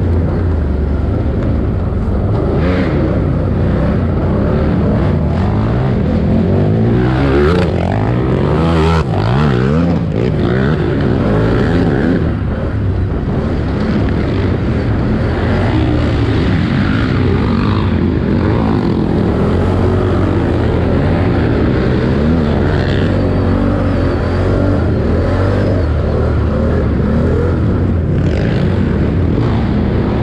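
A 4x4 ATV's engine running hard under race load, revs rising and falling repeatedly, most sharply about eight seconds in. Heard close up from a helmet camera.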